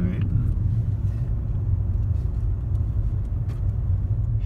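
Steady low rumble of a moving car heard from inside the cabin: engine and road noise with no sharp events.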